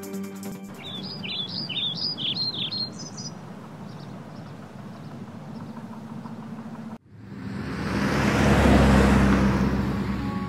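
A few birds chirping over steady outdoor ambience. Near the end, a car drives past, its engine and tyre noise swelling and then easing.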